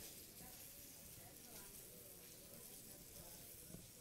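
Faint sizzling of breaded perch fillets frying in hot olive oil in a pan, barely above near silence.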